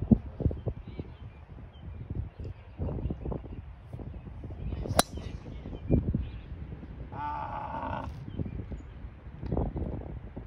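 A golf driver striking the ball off the tee: one sharp crack about five seconds in, with wind buffeting the microphone throughout. About two seconds after the strike, a short pitched call is heard.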